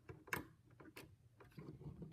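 Plastic Lego bricks clicking as a weapon-rack piece is pressed back onto the model: a couple of sharp, faint clicks in the first second, then a few fainter ones near the end.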